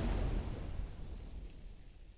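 Closing sound of an outro jingle: a final noisy hit with a deep low rumble that fades away over about two seconds.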